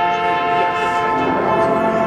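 Marching band brass holding a loud sustained chord that moves to a new chord about halfway through.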